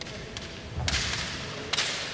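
Two sharp cracks of bamboo kendo shinai striking, a little under a second apart, with low thuds and each crack trailing off in a hissing echo from the hall.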